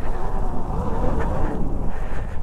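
Talaria X3 electric dirt bike riding along a woodland trail: a steady rumble of wind on the microphone and tyres on the ground, with only a faint whine from the quiet electric motor.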